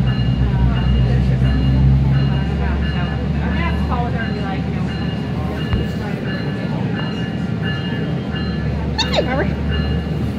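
SMART diesel multiple-unit railcar heard from inside the passenger cabin as it pulls away from a station: a steady low engine and running rumble with a faint high whine, its deeper note easing about two and a half seconds in. Brief voices come in near the middle and near the end.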